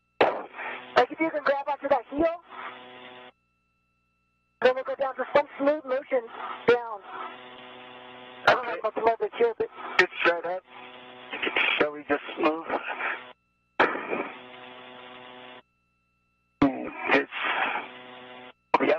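Spacewalk radio chatter: voices over a narrow, tinny radio loop, in several transmissions that key in and cut off abruptly with short silences between them, a faint steady hum under each.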